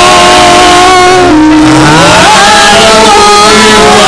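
A woman singing long held notes into a handheld microphone, with a rising slide in pitch about two seconds in, over steady musical accompaniment; very loud, at the top of the recording's range.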